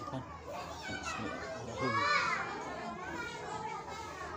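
Children's voices in the background, playing and calling out, with one loud high call rising and falling about two seconds in.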